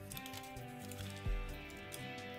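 Background music with steady held notes, over light clicks of small plastic toy parts being handled, with one soft knock a little past a second in.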